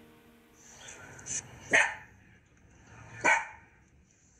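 Small Miniature Fox Terrier barking: a softer bark a little over a second in, then two loud, short barks about a second and a half apart.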